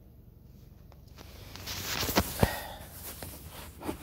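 Handling noise from a phone being moved around in the hand: rubbing and fumbling that builds about a second and a half in, with a few small knocks.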